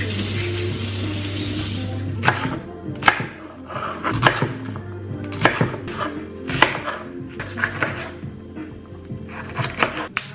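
Kitchen knife chopping pak choi and a bell pepper on a wooden chopping board: sharp knocks of the blade on the board about once a second, over background music. A rushing hiss fills the first two seconds.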